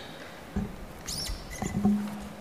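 Small handling noises: a soft knock about half a second in, then a short high squeak about a second in, and a brief low hum near the end.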